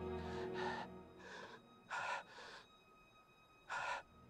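A badly wounded man's ragged gasping breaths, six short gasps with the loudest about two seconds in and just before the end. Under them a film score fades out about a second in, leaving only a few faint held tones.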